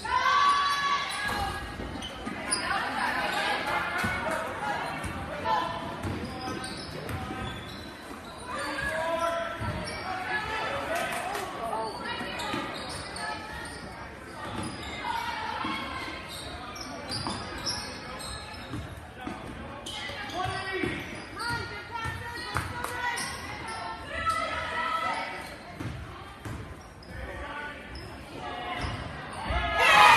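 Basketball game in a gymnasium: a ball bouncing on the hardwood court under a steady hubbub of indistinct spectator and player voices. Right at the end the crowd breaks into loud cheering.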